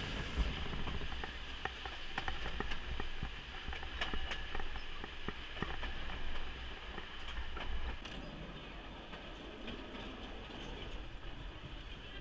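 Narrow-gauge passenger train rolling along the track, heard from an open carriage window: a steady rumble with scattered clicks and clacks of the wheels on the rails, easing off slightly about eight seconds in.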